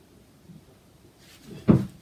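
A single dull thump near the end, after a brief faint rustle.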